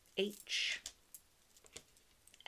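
Wooden Scrabble letter tiles clicking lightly against a table as a tile is set down in a row, three or four small clicks. A single short spoken letter near the start is the loudest sound.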